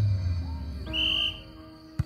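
A short referee's whistle blast about a second in, the signal for the serve, over background music.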